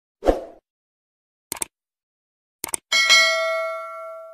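Subscribe-button animation sound effects: a short thump, then two sets of quick clicks about a second apart, then a bright bell ding that rings on and fades slowly.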